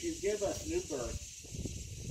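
A man's voice reading a prayer aloud, with a pause in the second half, over a faint steady hiss.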